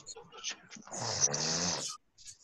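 A man making a loud, noisy throat or breath sound for about a second, stopping abruptly, after a few faint short sounds.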